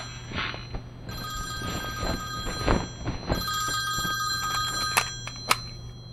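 Telephone ringing in repeated bursts of a few seconds, a ring made of several steady high tones. Near the end come two sharp clicks as the phone is reached for and picked up.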